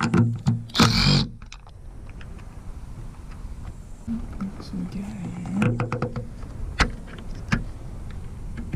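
Cordless drill-driver briefly spinning a socket on a roof-rail mounting bolt, in two short bursts within the first second or so. Later there are a few sharp clicks and taps of hard parts.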